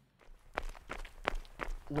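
Running footsteps opening the podcast's theme: a steady stride of about three steps a second, getting louder.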